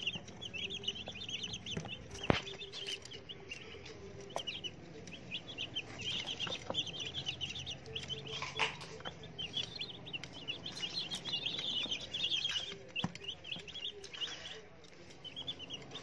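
A flock of day-old white broiler chicks peeping continuously, with many short, high cheeps overlapping. There is a single sharp tap about two seconds in.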